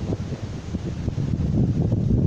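Wind buffeting the camera microphone in uneven gusts, growing a little stronger in the second half, with breaking surf underneath.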